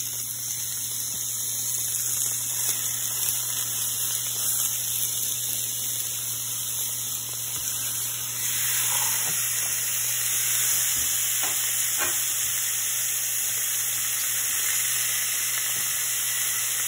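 Steak searing in a smoking-hot cast iron pan: a steady sizzle that grows louder about halfway through, with a couple of light clicks later on.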